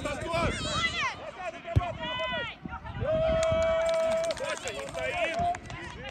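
Children's high-pitched voices shouting and calling out without clear words across an outdoor football pitch, with one long held shout starting about three seconds in. One sharp thud of a football being kicked comes a little before two seconds in.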